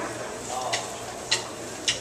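A drummer's count-in for the next song: three sharp, evenly spaced clicks a little over half a second apart, over low crowd chatter.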